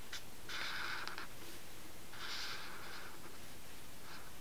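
Chisel-tip permanent marker drawn across paper: two short scratchy strokes, one about half a second in and one about two seconds in.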